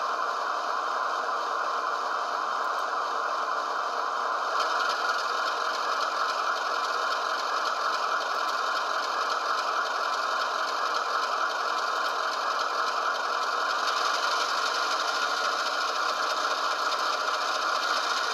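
HO-scale model locomotive's Tsunami2 sound decoder playing a GE GEVO diesel prime mover through its small onboard speaker, thin and without bass, being notched up in RPM: the engine sound steps up about four and a half seconds in and again near fourteen seconds.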